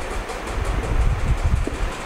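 Marker writing on a whiteboard under a loud, uneven low rumble with a steady hiss.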